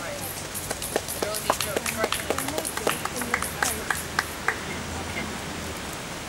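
Faint talking from people near the microphone over a steady outdoor background hiss, with scattered small clicks and knocks from a handheld microphone being handled as it is passed to the next speaker.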